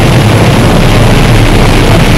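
Harsh noise / power electronics track: a loud, unbroken wall of dense noise across the whole range, heaviest in a low rumbling drone, with no pauses or changes.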